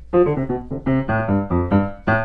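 C. Bechstein A208 grand piano played staccato in the tenor register just above the wound bass strings: a quick run of short, detached notes, each stopped dead as its damper touches the strings, with almost no ringing or extra sustain. The notes sound insanely crisp.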